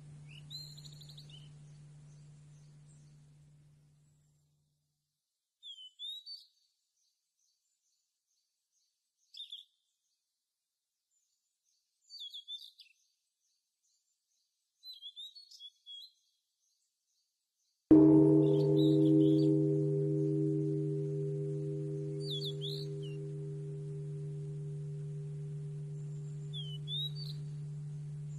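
A deep metal gong-like chime struck once about two-thirds of the way in, ringing on with several steady pitches that slowly fade. The ringing of an earlier stroke dies away in the first few seconds. Short high bird chirps come every few seconds throughout.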